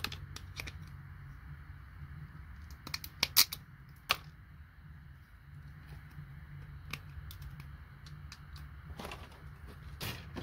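Hand cutters snipping IC chips and components off a circuit board: a scattered series of sharp clicks and snaps, loudest in a quick cluster about three seconds in, over a steady low hum.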